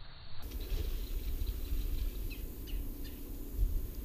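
Outdoor ambience: an uneven low rumble of wind on the microphone, with a few short, faint bird chirps.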